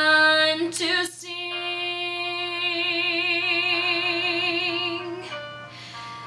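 A woman singing a musical-theatre ballad solo: a short sung phrase, then one long held note with vibrato from about a second in, tapering off near the end.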